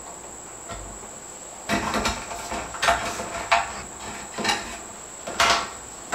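A hammer knocking on wooden wall studs, with about five irregular sharp knocks beginning about two seconds in, as stapled electrical cable is worked loose from the framing.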